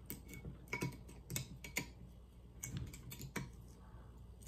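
Kitchen knife scraping and clicking against the foil capsule on a wine bottle's neck as the foil is cut away: a string of irregular, sharp little clicks and scrapes.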